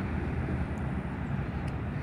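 Steady, fairly quiet outdoor background rumble with no distinct events, the kind of low noise that distant traffic makes.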